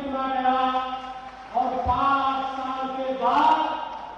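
A man's voice through podium microphones, speaking in long drawn-out phrases with held, chant-like vowels that glide between pitches.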